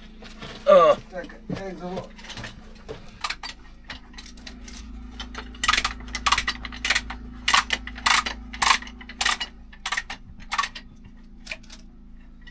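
Manual chain hoist being worked to lift a block of reinforced concrete, its metal chain clinking in a steady rhythm of about two clinks a second, beginning a few seconds in.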